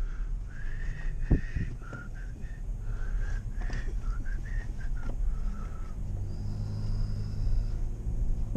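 Pickup truck cabin noise while driving, a steady low road and engine rumble. Over the first five seconds a run of short, high, wavering tones sounds above it.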